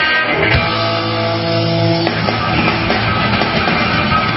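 Live blues-rock band playing at full volume, with electric guitar and bass; a chord is held for about the first two seconds before the playing moves on.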